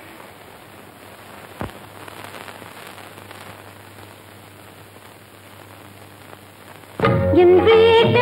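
A break in a film song: faint steady hiss of an old soundtrack, with one sharp click about a second and a half in. Music with singing comes back in about seven seconds in.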